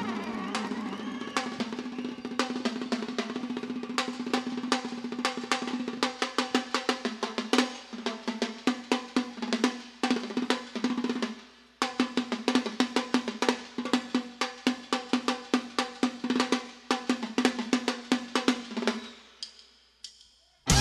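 A live cumbia band's drums playing a fast, even run of strokes over a held note, with a brief break about two-thirds of the way through. The drums die away just before the end.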